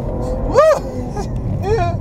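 A Volvo S60 T6's turbocharged three-litre straight-six accelerating hard, heard from inside the cabin as a low rumble. A faint whine climbs through the first half-second.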